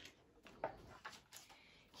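Faint, brief rustle and soft taps of a large picture-book page being turned, otherwise near silence.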